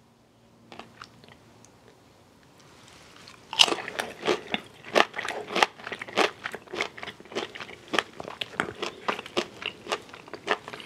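Close-miked chewing of crispy fried chicken, the coating crunching. It is fairly quiet for the first few seconds apart from a few faint clicks, then from about three and a half seconds in comes a dense, irregular run of crunches, several a second.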